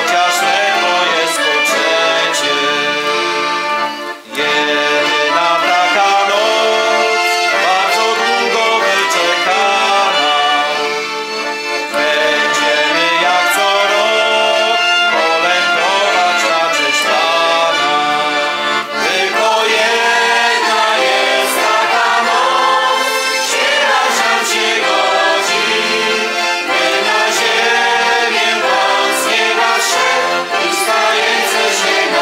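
Polish bagpipe band accompanying a man and a choir singing a Christmas carol: voices carrying the melody over the reedy, steady drone of the pipes, with a brief break about four seconds in.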